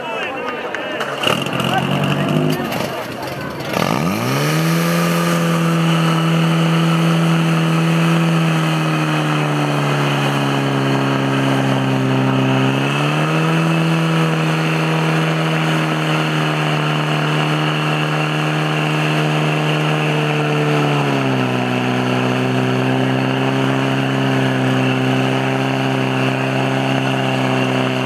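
Portable fire pump engine starting about four seconds in, then running hard and steadily at high revs as it pumps water through the attack hoses. Its pitch steps up about thirteen seconds in and drops back about eight seconds later.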